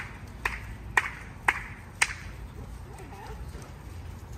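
A person clapping their hands, about two claps a second, stopping about two seconds in.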